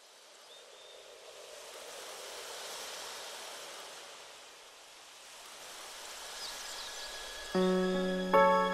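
Intro of a recorded pop song: a soft wash of nature ambience like surf or running water that swells and ebbs, with a few faint bird chirps, before the instrumental music comes in with a loud chord near the end.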